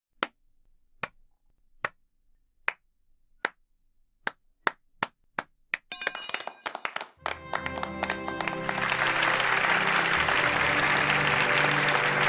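A slow clap: single hand claps about every 0.8 seconds that quicken about four seconds in, are joined by more clappers, and swell into full crowd applause over music from about seven seconds in.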